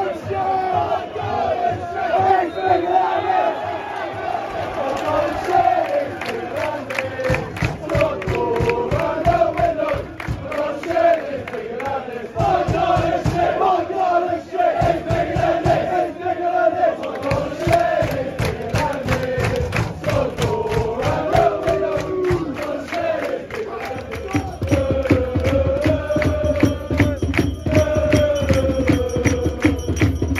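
Football crowd in the stand singing a chant together, loudly and without a break. A steady rhythmic clapped beat joins in about seven seconds in and grows stronger near the end.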